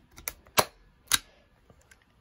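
Logan Dual Driver Elite framer's point driver clicking as its handle is squeezed and it fires a metal framing point into the back of a wooden picture frame. A few sharp clicks, the two loudest about half a second apart.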